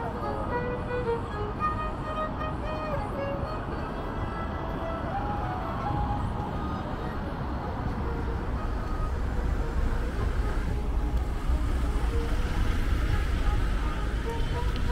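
City street traffic at a busy junction: vehicles passing close, with voices in the first few seconds. A heavier vehicle's low engine rumble grows louder over the last few seconds.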